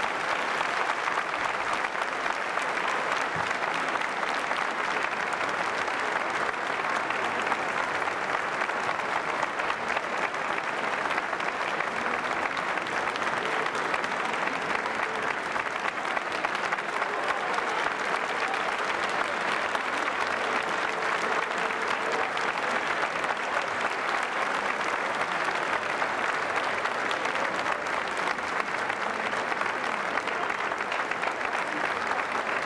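Theatre audience applauding steadily, a dense, even clapping that holds at one level throughout.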